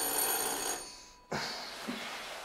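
Electric doorbell ringing once, a high rattling ring about a second long that then dies away.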